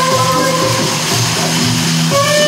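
A live improvised jam on electric guitar, bass guitar and saxophone. A held melodic note fades out within the first half second, leaving a steady low bass note under a noisy, droning band texture until a new melody note comes in at the end.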